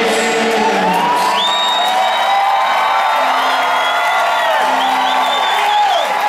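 Large stadium crowd cheering and whooping after a song, with many shrill whistles sliding up and down over the roar. A low held musical note dies away in the first second.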